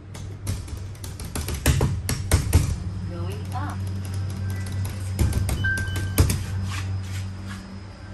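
Inside a Mitsubishi Electric service elevator car: a steady low hum under a run of sharp knocks and clicks, with one short high electronic beep a little past halfway, around a floor button being pressed.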